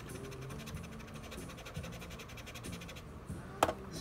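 Alcohol-wet cotton swab scrubbing the face of an Elektron Model:Samples between its pads: a fast, even scratching for about three seconds, then a single sharp click.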